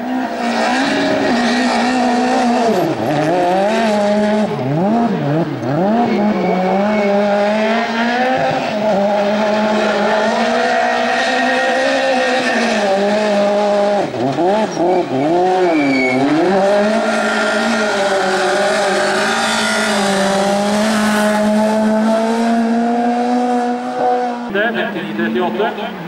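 Small rally car's engine running hard at high revs under full throttle as it races along the course. The revs dip and climb back sharply twice, about three seconds in and again around fifteen seconds in.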